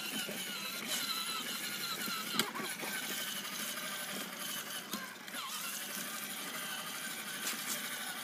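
Battery-powered toy ride-on motorcycle running slowly along a concrete sidewalk: a steady small electric-motor-and-gearbox whine with its plastic wheels rolling on the concrete, and a single small knock about two and a half seconds in.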